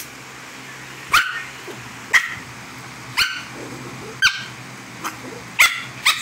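Small fluffy white dog barking at close range: five short, sharp barks about a second apart, with a softer one just before the last.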